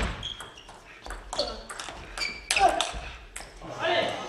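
Table tennis rally: the ball clicks sharply off the rackets and the table in quick succession, a few hits each second.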